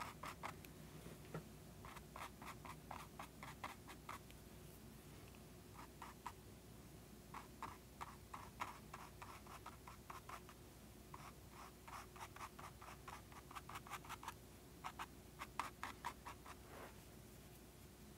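A paintbrush scratching acrylic paint onto a canvas in faint runs of short, quick strokes, with brief pauses between the runs.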